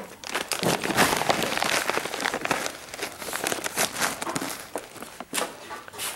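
Plastic parts bag crinkling and rustling in a hand, a dense run of small crackles that thins out in the second half.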